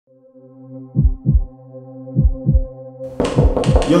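Heartbeat sound effect in deep paired thumps, lub-dub about once a second, over a steady droning chord. About three seconds in, a loud hissing swell comes in over the beat.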